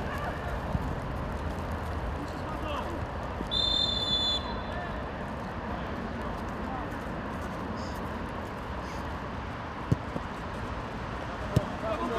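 Field sound of a football match: distant players' shouts over a steady outdoor background, with a short referee's whistle blast about three and a half seconds in. Near the end come two sharp ball kicks.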